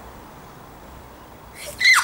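A girl's short, high-pitched squeal, falling quickly in pitch, about a second and a half in, after a quiet stretch.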